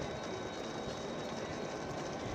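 Footfalls of a pack of runners in carbon-plated foam racing shoes on an asphalt road, blending into a steady wash of sound with no single step standing out, plus a faint steady high tone.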